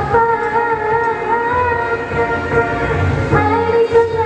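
A woman singing into a microphone over a backing track, holding one long wavering note for about three seconds before starting a new phrase.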